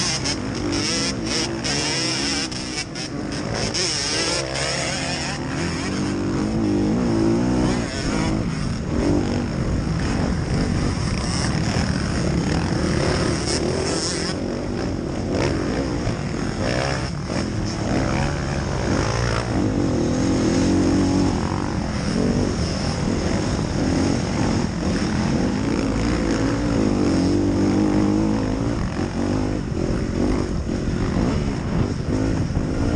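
Motocross bike engine heard from the rider's helmet camera, revving up and down through the gears with its pitch rising and falling again and again, over a constant rush of noise and other dirt bikes.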